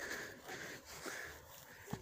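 Faint rustle of people walking over grass, about two steps a second, with breathing close to the microphone and a light click near the end.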